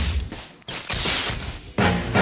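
A comb raked through a coarse beard, its teeth rasping over the hair: short strokes, then one longer hissing stroke about midway.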